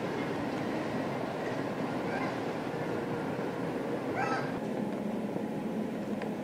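Steady outdoor street ambience picked up by an old camcorder's built-in microphone, a constant noisy hiss. About four seconds in comes a short high-pitched call, with a fainter one about two seconds in.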